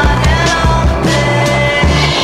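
Rock music soundtrack, with skateboard wheels rolling on concrete mixed in under it.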